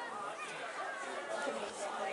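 Indistinct chatter: several people talking at once, their voices overlapping.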